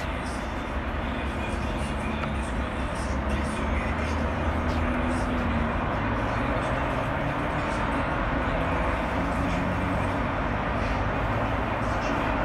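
Steady outdoor background noise, a low rumble with a hiss, growing a little louder about four seconds in.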